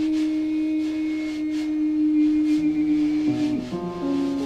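A woman's voice holding one long, steady, almost pure note. Lower notes join in near the end.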